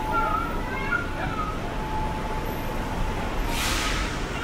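City street ambience: a steady low traffic rumble with a few short, high-pitched calls in the first second and a half, and a brief burst of hiss near the end.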